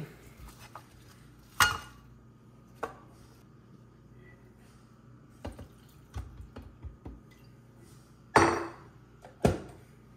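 Scattered clinks and knocks of kitchen utensils and dishes being handled and set down on a countertop, with one louder clatter about eight seconds in.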